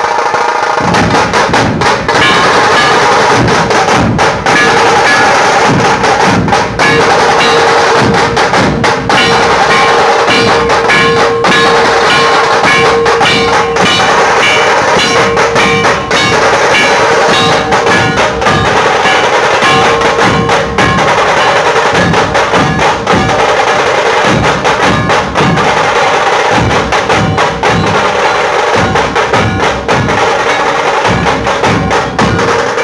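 A dhol-tasha band drumming in a street procession. Large barrel dhols beat a fast, dense, unbroken rhythm, very loud and close.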